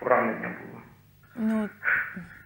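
A man's voice over a telephone line, thin-sounding with no high end, speaking briefly; then a short voiced sound about one and a half seconds in.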